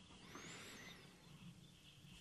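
Near silence: quiet room tone with a low hum, and a faint high whistle that rises and falls, starting about a third of a second in.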